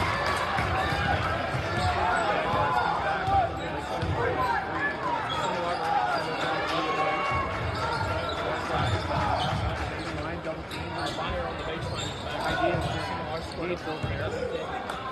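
Basketball being dribbled on a hardwood gym floor, repeated bounces under the steady chatter of a crowd in a large, echoing gymnasium.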